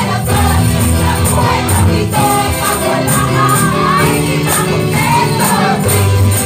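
A group of women singing a lively praise song together, led on a microphone, with ribbon tambourines jingling in time to a steady beat.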